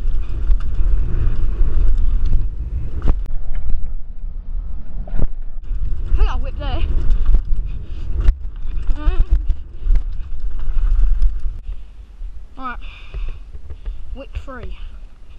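Mountain bike ridden fast down a dirt trail, heard from a body-mounted action camera: wind rushing over the microphone and tyre and frame rattle, with sharp knocks from bumps and roots. The noise eases near the end as the bike slows to a stop.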